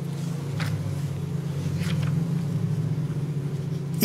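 A steady low motor hum that swells slightly in the middle, with two faint soft clicks, one about half a second in and one about two seconds in.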